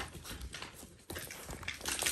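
Dalmatian puppies scuffling in play, with irregular light knocks and clicks.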